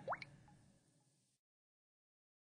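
Near silence as the backing music ends, with one faint, quick rising blip just after the start and then nothing.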